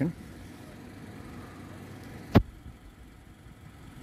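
A vehicle engine running steadily at idle, heard as a low rumble under the street's background, with one sharp click a little past halfway through.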